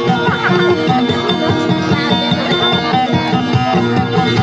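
Guitar playing dayunday accompaniment in quick, rapidly repeated plucked notes, with other notes ringing on above them.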